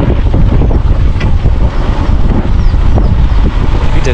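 Wind buffeting the microphone of a camera carried on a moving motorcycle: a loud, uneven low rumble, with the ride's road and vehicle noise mixed in underneath.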